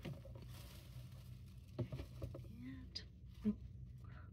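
Soft rustling and a few light taps of handbag packaging being handled: a fabric dust bag, tissue paper and a cardboard box.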